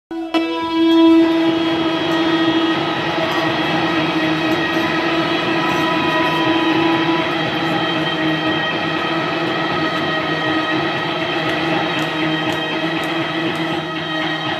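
Loud amplified electric guitar drone: several sustained tones held together, steady throughout, with a few faint ticks over them.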